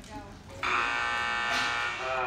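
Arena timer buzzer sounding one long, steady, harsh buzz, starting just over half a second in and lasting about a second and a half.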